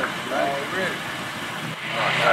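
Faint talking over a steady outdoor hum of traffic or an idling car.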